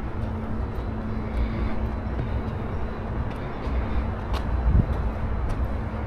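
Outdoor ambience: a steady low rumble with a faint steady hum, and a few light ticks, one of them about three-quarters of the way through.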